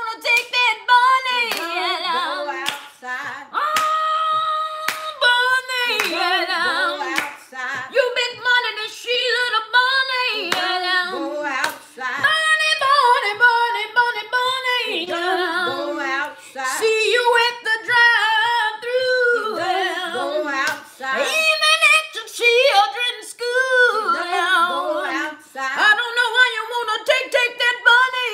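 A woman singing unaccompanied, with a wide vibrato, holding one long steady note about four seconds in.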